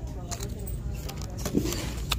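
A ceramic mug and its packaging being handled and lifted from a store shelf: a few short clinks and knocks over a steady low hum.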